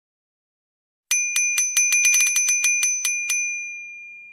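Bicycle bell rung in a quick trill of about a dozen strikes starting about a second in, then left to ring out and fade.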